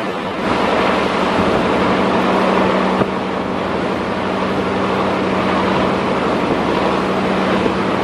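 Rough river water rushing and splashing in a passenger launch's wake, over a steady low engine drone, with wind buffeting the microphone. The sound swells about half a second in, and there is a short knock about three seconds in.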